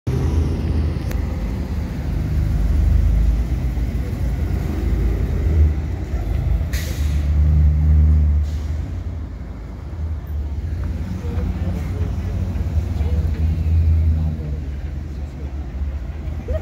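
Engines of Blue Bird Vision school buses running as the buses pull past at low speed: a deep rumble that swells and eases several times, with a short hiss of air about seven seconds in.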